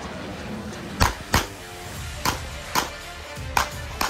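Five pistol shots from a single-stack 9 mm handgun, sharp and unevenly spaced: a quick pair about a second in, then three single shots over the next two and a half seconds. Steady background music runs underneath.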